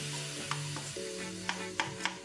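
A kitchen knife slicing through red onion and striking a plastic cutting board, a few separate chops, over background music with held notes.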